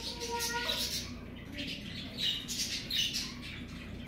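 Birds giving several short, sharp high squawks and chirps, roughly a second apart.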